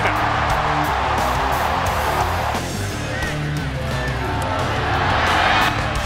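Guitar-driven background music with a stadium crowd cheering a touchdown; the cheering drops off about two and a half seconds in.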